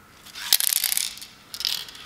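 Clicking and rattling of a 2K aerosol paint can being turned over and handled in gloved hands, with a sharp click about half a second in and a second short burst near the end.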